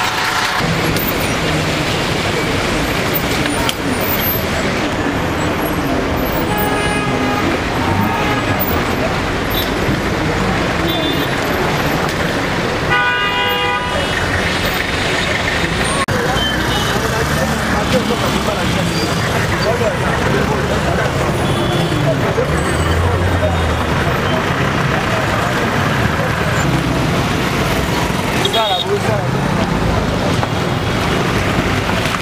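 Busy road traffic running steadily, with car horns honking: a short horn about seven seconds in and a louder, longer horn blast about thirteen seconds in.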